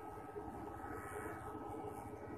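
Homemade transformer inverter running under test: a steady electrical hum with a thin, constant high whine.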